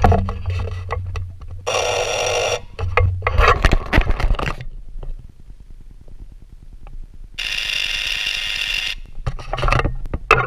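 ETC Model E5 ignition-lead cable tester buzzing as its push-to-test button is held and a high-voltage spark arcs across its window, in two bursts of about a second each: around two seconds in and near eight seconds in. A continuous arc is the sign of a good lead. Clicks and clatter of handling come between the bursts.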